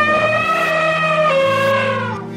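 A comic sound effect dubbed in place of a revolver shot: one long pitched call that holds its note, steps down in pitch about two thirds of the way through and fades near the end. It plays over steady background music.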